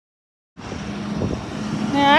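Road traffic: a passing vehicle's low engine and tyre rumble that starts about half a second in and slowly grows louder.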